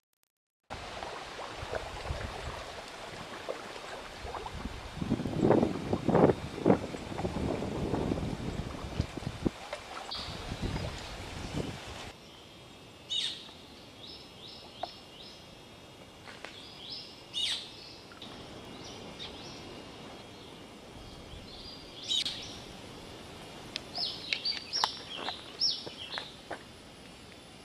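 Rushing outdoor noise with heavy low rumbles a quarter of the way in. About halfway it cuts to a quieter forest background with short, sharp, high squeaking calls of a flying fox, a few spaced apart and then several in quick succession near the end.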